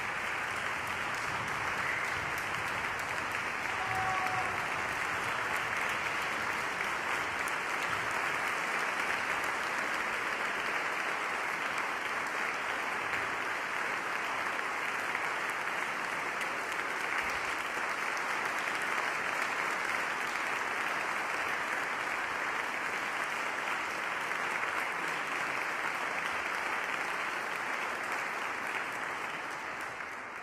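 An audience applauding at length after a speech, a steady dense clapping that dies away at the very end.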